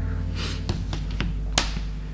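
Steady background music with a few short, breathy bursts of laughter over it.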